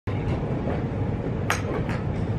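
Steady low rumble of driving-range background noise, with two sharp clicks: a louder one about one and a half seconds in and a fainter one near the end.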